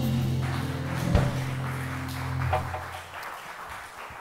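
A band's closing chord held on guitars and keyboard, fading away until it dies out about three seconds in, with a single sharp knock about a second in. Only faint room sound and a few light knocks follow.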